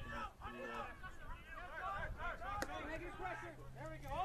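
Faint, overlapping shouts and chatter from players and onlookers around an outdoor soccer field, with one sharp knock about two and a half seconds in.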